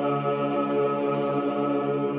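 Chant-style music with voices holding a long, steady chord.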